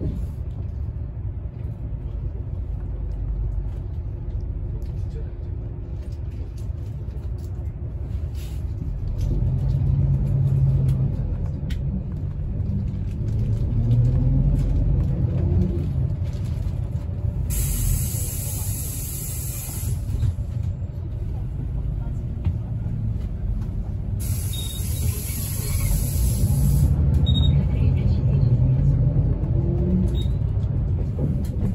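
City bus engine and road rumble heard from inside the cabin, the engine note rising as the bus accelerates around the middle, with two hisses of compressed air from the bus's air brakes about two-thirds of the way through.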